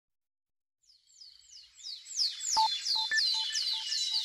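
Bird calls: a high chirp sliding downward, repeated about three times a second, fading in after a moment of silence, with short low beeps between the chirps from about halfway through.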